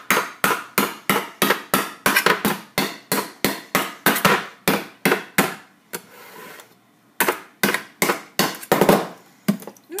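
Kitchen knife repeatedly stabbing down into the lid of a tin can, sharp metallic strikes about three a second, with a pause of about a second past the middle.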